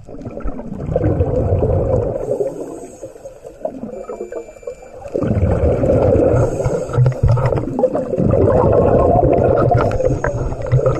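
Scuba regulator exhaust: a diver breathing out through the second stage, sending bubbles past the camera in a loud bubbling rumble. There are two long exhalations, one about a second in and a longer one from about five seconds on, with a quieter spell between them that fits an inhalation.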